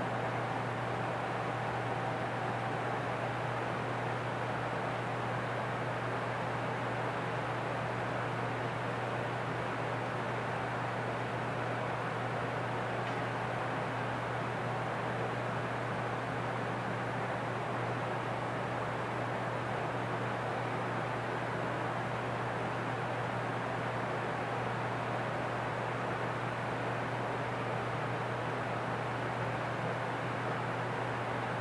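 Steady room tone: an even hiss with a low hum underneath and no other events.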